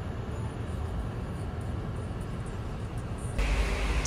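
Steady low rumble of a hybrid car heard from inside its cabin as it rolls slowly. A little before the end the sound changes abruptly to a louder hiss with a deeper rumble.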